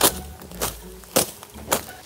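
Footsteps through forest undergrowth, with twigs cracking underfoot: four sharp steps about half a second apart.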